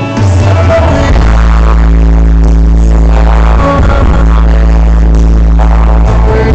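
Live rock band playing an instrumental passage: electric guitar over heavy held bass notes and drums, recorded loud from the crowd.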